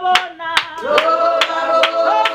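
A group singing together in held notes over steady rhythmic hand clapping, about two to three claps a second.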